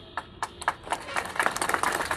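Crowd applauding: scattered handclaps that thicken into dense applause about a second in.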